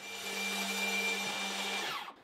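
DeWalt jobsite table saw running steadily with a constant whine as a sheet of half-inch plywood is ripped through the blade; the sound cuts off suddenly just before the end.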